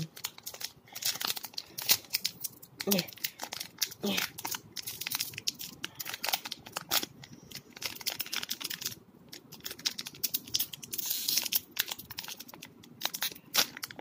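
Foil booster-pack wrapper crinkling in the fingers as it is worked at to tear it open, in short irregular crackles, with a denser stretch of crinkling about eleven seconds in.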